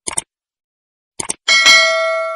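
Subscribe-button animation sound effects: a quick pair of mouse clicks, another pair a little after a second in, then a bell chime about one and a half seconds in that rings on and slowly fades.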